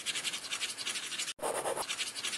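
Pen scribbling rapidly on paper in quick back-and-forth strokes, with a short break just under a second and a half in.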